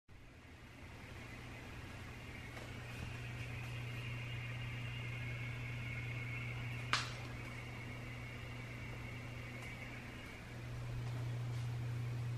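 Quiet indoor room tone: a steady low hum with a faint high whine, broken by one sharp click about seven seconds in. The hum gets a little louder near the end as the whine fades.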